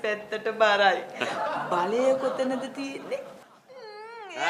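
Actors speaking and laughing in Sinhala comedy dialogue, with a drawn-out wavering vocal sound near the end.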